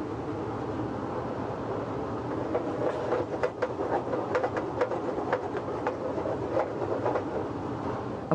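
Tomato compote cooking down in a hot pan: a steady sizzle with irregular pops and spits, which come more often after the first couple of seconds.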